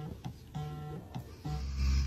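Background music: plucked guitar notes in a short repeating pattern. A low steady hum joins near the end.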